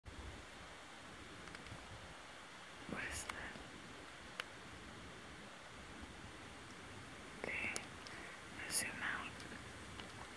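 Faint whispering in a few short snatches, about three seconds in and twice near the end, over a steady low hiss, with one sharp click in between.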